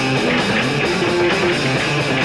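A rock band playing live: electric guitar, bass guitar and drum kit.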